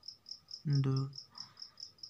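Insect chirping in the background: an even train of short, high-pitched pulses, about six a second.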